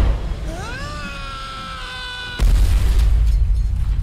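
A recorded clip of Tom Cruise screaming, played on a podcast: one long scream that rises in pitch and is then held for about two seconds. A heavy low booming rumble comes at the start and again through the last second and a half.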